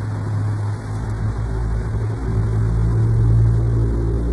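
Street traffic: a car's engine and tyres, a steady low rumble that swells as the car passes close by near the end.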